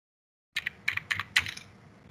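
Computer keyboard typing: a quick run of about six key clicks, starting about half a second in. The keystrokes enter a shortcut that autocorrect expands into a longer phrase.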